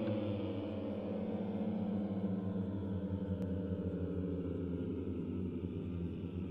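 A sustained low, ringing musical drone with several overtones layered above it. Its upper tones slide slightly down in the first couple of seconds, then it holds steady.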